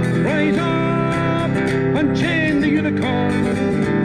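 A man singing a folk song to a strummed acoustic guitar, played through a small amplifier with slight distortion; a held sung note comes near the start and the guitar carries on between lines.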